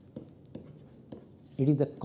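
Faint scratching and light ticks of handwriting as a word is written out, in short irregular strokes.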